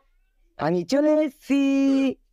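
Three cat-like meowing calls. The first two are short and wavering, and the last is long and held at one steady pitch.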